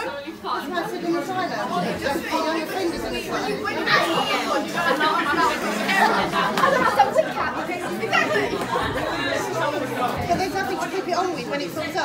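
Chatter of several people talking at once in a large room.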